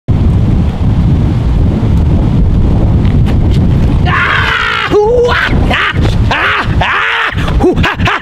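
Wind buffeting the microphone, a loud low rumble. About four seconds in, a man lets out a long high yell and goes on shouting in short bursts.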